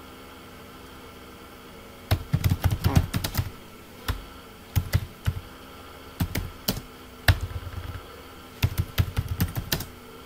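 Typing on a computer keyboard: irregular bursts of keystroke clicks that start about two seconds in, with short pauses between words.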